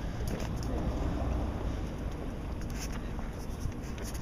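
Low, irregular rumble of wind and handling noise on a small handheld camera's microphone, with faint scratchy rustling.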